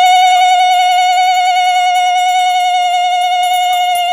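Conch shell (shankha) blown in one long, steady note with a slight waver, sounded during a vehicle puja.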